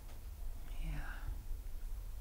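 A brief soft, whispered murmur of a voice about a second in, over a low steady rumble.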